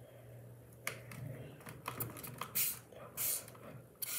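Faint clicks and rubs of hard plastic as the head of an O2COOL mist-fan water bottle is handled and fiddled with: a scatter of small sharp clicks, with two short scraping rustles near the end.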